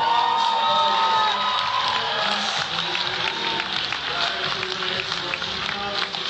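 A male singer's voice glides up into a long held note, then an audience cheers and claps.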